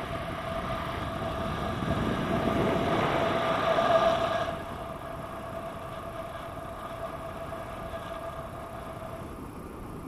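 Airflow rushing over an action camera's microphone in paraglider flight, with a steady whistle running through it. The rush builds to about four seconds in, then drops off sharply and stays lower.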